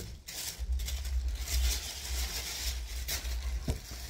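Rustling and handling of cardboard and paper packaging, with a sharp click near the end over a steady low rumble.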